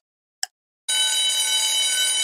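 Countdown timer sound effect: a last short tick, then from about a second in a steady ringing alarm tone with many overtones, signalling that the time to answer has run out.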